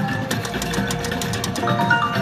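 Kilimanjaro video slot machine playing its bonus-round spin music while the reels spin, with a run of bright, stepping chime notes near the end as the reels stop on a small line win.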